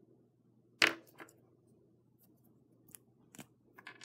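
Small plastic toy figure parts clicking as pieces are pulled off and pressed on. One sharp click comes about a second in, followed by a few fainter, irregular clicks.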